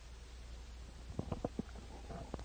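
Low steady hum with a quick run of about five soft knocks a little past halfway.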